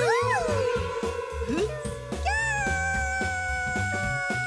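Cheerful cartoon background music with a steady bass line and held tones. Over it, a cartoon character makes a few short squeaky vocal sounds that rise and fall in pitch, with a laugh near the middle.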